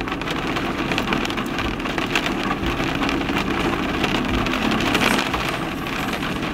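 Rain pattering on the car's roof and windshield, heard from inside the cabin as a steady dense patter with a low hum underneath.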